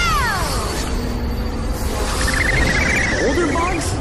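Cartoon action soundtrack: a character's yell falling away at the start over a steady low rumble, then a high warbling squeal about two seconds in and a few short yelps near the end.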